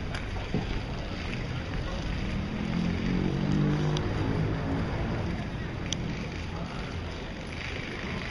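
Night-time street noise with wind on the microphone and indistinct voices. A louder low-pitched sound swells and fades a few seconds in.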